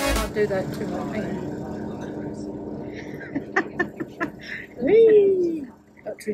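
Electronic dance music cuts off just after the start, leaving a steady low hum under indistinct voices and light clicks. About five seconds in, one voice gives a drawn-out sound that rises and then falls in pitch.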